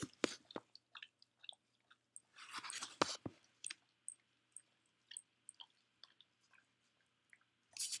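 Dog licking peanut butter out of a glass bowl: faint, irregular wet smacks and tongue clicks, with a louder spell of licking about two and a half to three seconds in.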